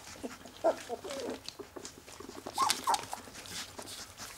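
A young puppy gives short whimpers in two brief bursts as it roots with its muzzle into a cat's fur. This is the nuzzling, teat-seeking rooting of an orphaned pup. Newspaper rustles under its paws.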